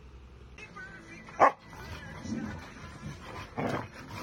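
A Rottweiler and a Chow Chow play-fighting, with dog barks and growly vocalising. One sharp, loud bark comes about a second and a half in, and a few more bursts follow near the end.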